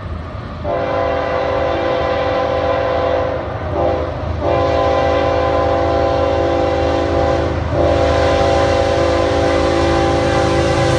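Air horn of an approaching CSX GE ES44AC freight locomotive, a chord of several steady notes, sounded in long blasts: it starts about a second in, breaks briefly around four seconds and again near eight seconds. Under it runs the low rumble of the oncoming train.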